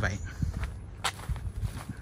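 Footsteps on bare dry soil, a few uneven steps.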